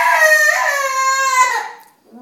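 A 3-year-old girl's long, high-pitched wailing cry, upset at being sent to bath and bed. It breaks in pitch about half a second in, then falls away and stops near the end.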